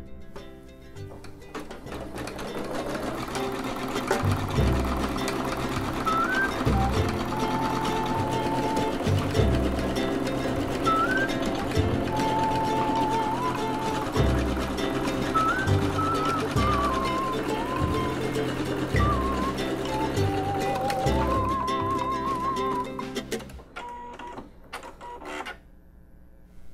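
Background music with a repeating bass line and a melody, which fades out near the end, over a Husqvarna Viking Designer Jade 35 sewing and embroidery machine stitching out an embroidery design.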